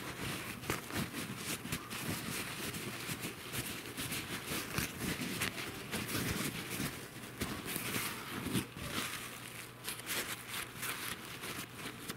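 Paper towel rustling and crinkling as it is rubbed over a small copper ring to dry it after rinsing, a continuous run of small, irregular crackles.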